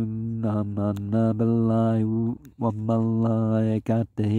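A voice chanting Quranic verses in Arabic in a level, sustained recitation tone, in long held phrases with brief pauses for breath.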